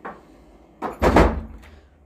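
A thump about a second in, with a fainter knock just before it.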